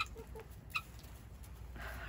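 Domestic hens clucking softly while they feed, with a couple of sharp clicks about a second apart.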